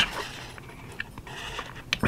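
Faint handling of a paper instruction leaflet: quiet rustle with a few soft ticks.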